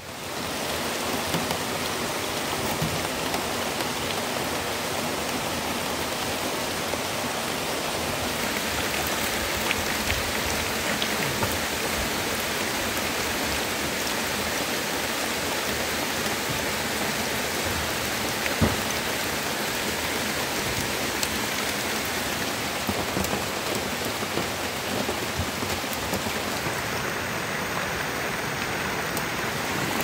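Steady rain falling, an even hiss that holds throughout, with a single sharp tap a little past halfway.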